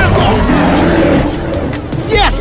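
Cartoon sound effect of a vehicle speeding past: a rushing noise with a steady engine hum in the middle that drops away near the end.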